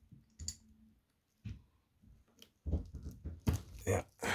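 Scattered clicks and scrapes with plastic crinkling: a case-opener tool working at a screw-down watch case back through a protective plastic sheet, without getting it to turn. The handling noise grows louder and busier in the last second or so.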